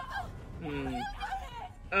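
Voices from the anime episode's soundtrack, quieter than the reactor's own voice, with a drawn-out cry that falls in pitch around the middle.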